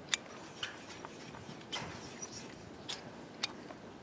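Scattered light metallic clicks and ticks, about five in all, as wire pigtail ties are twisted to fasten hardware cloth to a steel-wire armature.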